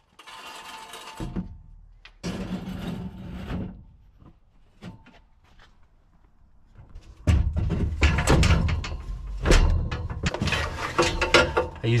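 Aluminum snowmobile loading ramp being slid out from under the sled on the pickup tailgate: metal scraping with some ringing, in two bouts. Scattered clicks follow, then from about seven seconds in a louder run of knocks and low rumbling handling noise.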